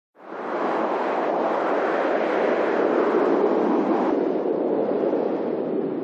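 A steady, rushing, engine-like roar that fades in quickly at the start; its upper hiss drops away about four seconds in.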